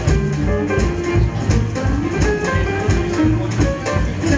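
Live swing jazz band playing an instrumental passage: piano, double bass and drums keeping a steady beat under held melodic notes.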